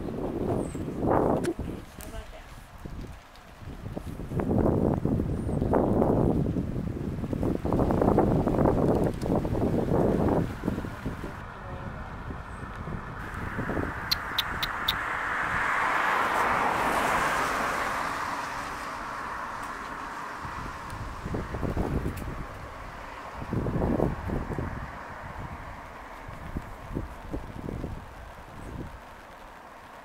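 Wind gusting against the microphone in irregular low rumbles over the first ten or so seconds. In the middle a rushing sound swells and fades over about five seconds, as a vehicle passing does.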